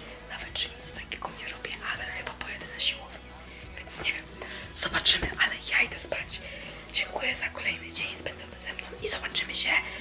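A woman talking over background music.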